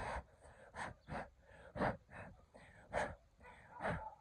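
A person blowing short puffs of breath at close range, about six or seven in a row, to blow ants off a picked raspberry.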